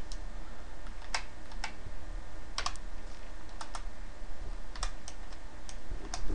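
Typing on a computer keyboard: scattered single keystrokes and quick pairs, with pauses of about a second between them, over a low steady hum.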